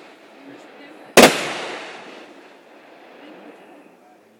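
An aerial firework bursts with one loud bang a little over a second in, and the boom trails off over about a second.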